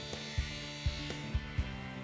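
Table saw cutting a pine board, a steady electric motor buzz, under background music.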